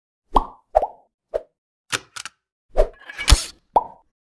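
Logo-animation sound effects: a run of short pitched plops, about one every half second, with a louder, broader hit and swish a little after three seconds in.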